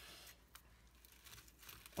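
Very faint crinkling and rustling of handled packaging over quiet room tone.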